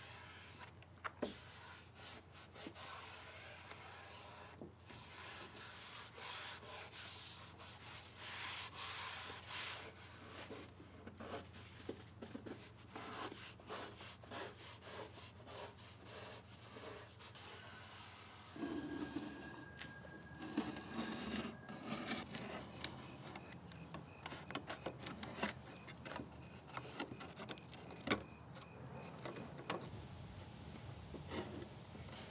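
Hands rubbing and pressing a sheet of paper-backed wood veneer down onto a wooden drawer front: a run of repeated dry rubbing strokes of skin and paper on wood.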